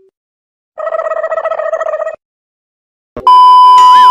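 Added comedy sound effects: a trilling, ring-like effect lasting about a second and a half, then silence. Near the end a loud, steady high test-tone beep, the TV colour-bars tone, comes in with a wobbling boing beginning over it.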